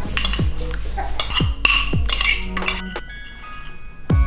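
A metal spoon clinking and scraping against a ceramic bowl several times while stirring and spooning out a topping, over background electronic music with deep falling bass notes.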